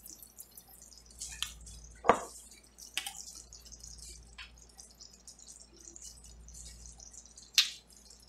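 Thick red gravy simmering in a cast-iron skillet: faint, with scattered wet pops, the sharpest about two seconds in and shortly before the end.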